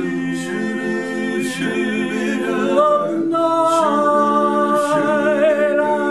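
Male barbershop quartet singing a cappella in close four-part harmony, holding sustained chords under short sung syllables with hissing 's' and 'sh' sounds. About three seconds in, a higher voice rises to a long held note over the chord, wavering slightly near the end.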